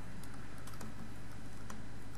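Light clicks at irregular times over a steady low hum.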